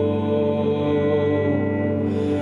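Live band music: a male singer holds one long, gently wavering note into the microphone, with instruments sustaining chords underneath.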